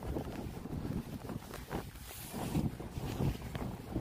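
Wind buffeting the microphone on a wet, windy day: a low, uneven rumble that rises and falls in gusts.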